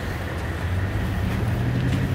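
Toyota Tundra pickup's engine idling: a steady low hum.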